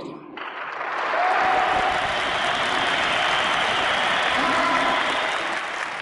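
Audience applauding, building up over the first second and then holding steady.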